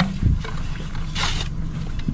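Lake water lapping against a boat's hull under a steady low rumble, with a brief rustling hiss a little over a second in.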